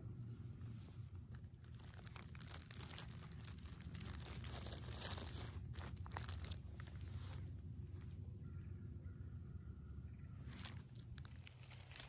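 Plastic snack bag crinkling as it is handled, in irregular runs of crackles.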